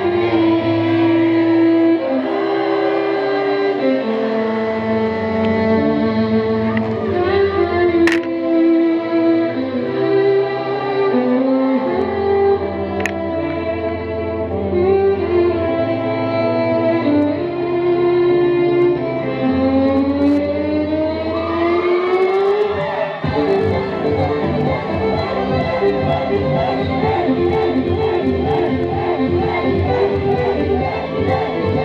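Electric violin playing a sliding melody over a backing track with a bass line. About 23 seconds in, a long rising slide leads into a faster passage of rapidly repeated notes.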